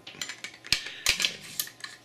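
Light metallic clicks and scraping from handling a polished stainless-steel Desert Eagle's slide and recoil spring assembly during reassembly, with two sharper clicks about two-thirds of a second and a second in.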